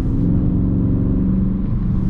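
2020 Dodge Charger Scat Pack's 6.4-litre (392) HEMI V8 heard from inside the cabin, running steadily under way with a deep, even exhaust drone.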